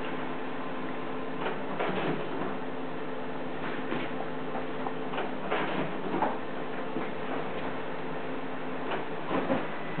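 Steady hum of a running ceiling fan, with scattered soft thumps and rustles of a kitten's paws landing and scrambling on a padded futon comforter.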